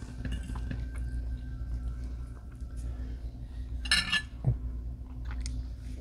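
A metal fork clinking against a ceramic plate, with a few light clicks of cutlery and one sharp clatter about four seconds in, over a steady low room hum.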